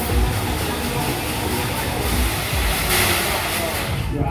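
Fairground ride music with a steady thumping beat over the low rumble of a spinning thrill ride, with a short burst of hiss-like noise about three seconds in.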